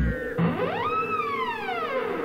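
Sound effect of a heavy wooden door creaking open on its hinges: one long squeal that rises in pitch and then slowly falls away, over a steady low drone.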